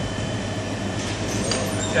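Steady room noise with a constant low hum.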